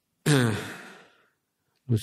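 A man's voiced sigh, starting about a quarter second in with a falling pitch and trailing off into breath over about three quarters of a second.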